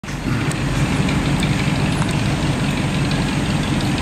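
The V8 of a 1979 Lincoln Continental Mark V running in slow traffic, a steady low exhaust rumble through a badly worn-out muffler.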